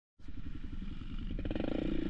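Dirt bike engine running, starting abruptly just after the beginning and gradually getting louder.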